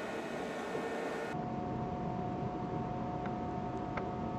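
Steady hum and hiss of a Fraxel laser unit's fan running. About a second in, the sound changes to a steadier hum with a thin, high, steady whine.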